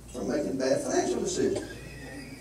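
A person speaking, with no clear words: a stretch of talk in a lecture room that fades out near the end.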